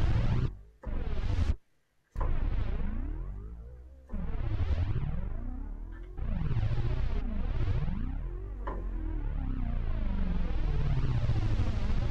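Roland Alpha Juno 2 synthesizer playing held notes while its envelope settings are adjusted live. The tone sweeps up and down over and over. The sound cuts out briefly about a second and a half in, and fresh notes start about two, four and six seconds in.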